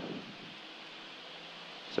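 Steady hiss of a single-engine high-wing light aircraft in flight, with a faint low hum under it, heard quietly.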